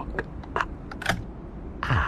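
A key being turned in a door lock: a few small sharp clicks, then a louder clunk near the end as the lock gives.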